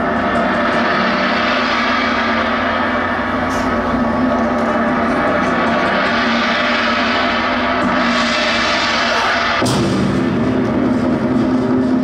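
A loud, sustained gong-like droning wash with no separate drum strokes. A brighter hiss joins about eight seconds in, and the sound deepens and grows heavier just before ten seconds.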